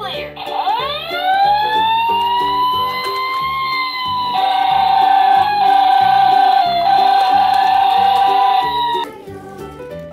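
Children's background music with a steady beat, and over it a long, loud pitched sound effect that slides up, then holds one steady note and stops abruptly about nine seconds in.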